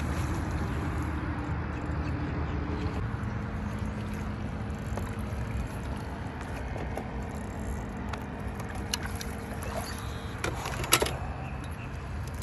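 Steady low hum of a boat's motor under a rushing noise, with a few sharp clicks and knocks near the end.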